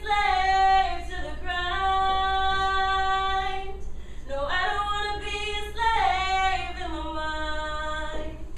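A female voice singing unaccompanied: two long phrases of held notes, the second sliding up into a note and then stepping down.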